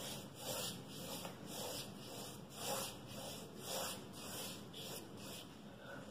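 Wet watercolour mop brush stroked back and forth across handmade paper, wetting the sheet with clean water: faint soft swishes, about one stroke a second.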